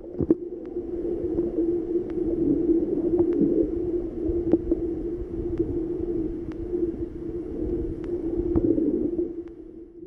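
Muffled underwater sound picked up by a submerged camera in cenote water: a steady low hum with faint ticks about twice a second.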